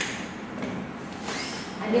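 Faint rustling of a travel cot's nylon floor fabric under a hand pressing and sliding on it, with a brief swish about a second and a half in.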